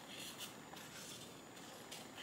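Small scissors cutting through a sheet of paper: a few quiet, brief snips.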